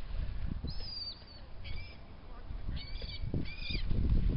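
Gulls calling over a feeding frenzy: four high calls, the first the longest, over a low rumbling noise.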